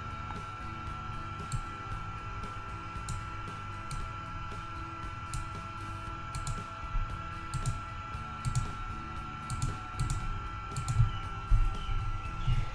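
Scattered computer mouse clicks, a few a second at times, over a steady electrical hum with a faint constant high whine.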